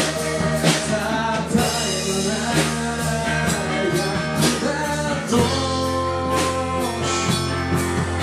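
Live rock band playing: distorted electric guitars, bass guitar and drum kit, with drum hits about once a second and a chord change with a deeper bass note about five seconds in.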